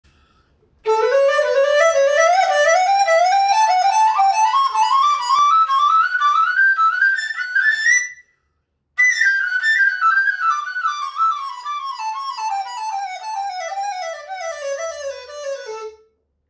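Bamboo transverse flute (dizi) playing a sequence exercise in fourths. A run of short note groups climbs step by step from low sol to high la, stops briefly about eight seconds in, then runs back down the same way to low sol.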